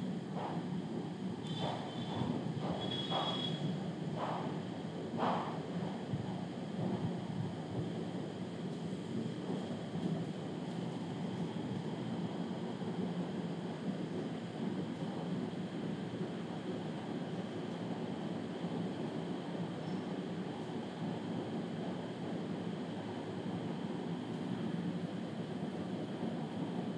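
Steady background room noise, an even low hum with no speech, with a few faint short sounds in the first six seconds.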